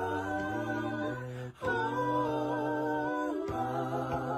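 Unaccompanied voices singing a slow piece in long held chords, several notes sounding at once, with short breaks between phrases about one and a half seconds in and again near the end.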